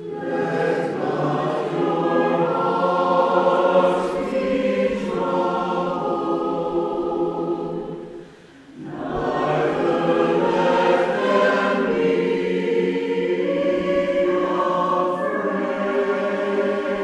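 Mixed church choir singing a choral benediction in two long phrases, with a brief break about eight seconds in.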